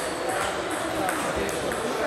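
Celluloid-type table tennis balls ticking off tables and bats, a handful of sharp separate clicks spread across the two seconds, over the general noise of a hall with several games going on.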